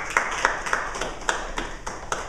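A small group of people clapping their hands, a quick patter of separate claps that thins out toward the end.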